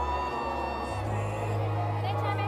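Music with long held low bass notes; the bass steps up to a higher note about a second in.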